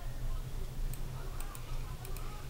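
A few computer mouse clicks, three sharp clicks about a second in with the last two close together, over a steady low electrical hum.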